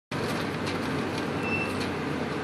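Steady road and engine noise heard from inside a moving car.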